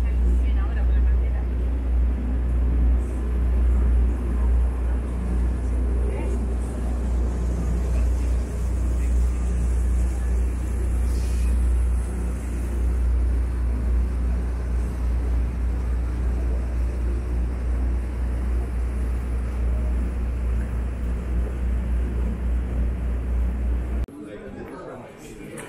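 Passenger boat's engine running steadily with a deep, constant drone, under an even rush of wind and water.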